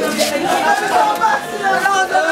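Several voices overlapping in chatter, with a high, drawn-out, wavering voice held over them.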